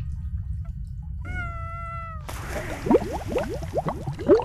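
A low rumble runs underneath. About a second in comes a short wail that falls slightly in pitch, then a splash as a body drops into bathwater, followed by bubbling gurgles.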